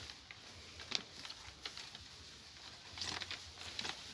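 Dry cipó vine strands rustling, scraping and clicking as they are woven by hand into a basket, with a few sharp clicks among the soft rustling.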